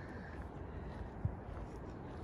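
Quiet outdoor background: a low, steady rumble with a faint hiss and no distinct event.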